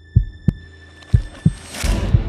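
Heartbeat sound effect: paired low thumps (lub-dub) about once a second, over a faint steady high tone. Near the end a rising whoosh swells up as the music comes in.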